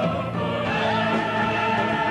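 A choir singing sustained chords with instrumental accompaniment; the harmony changes to new held notes about half a second in.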